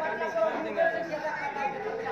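Several voices talking over one another, with no other clear sound above them.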